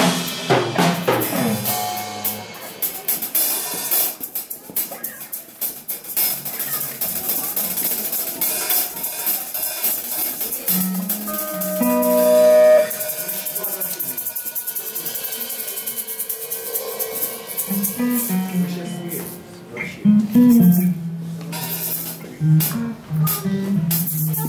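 A small band playing live, with a hollow-body electric guitar and drums.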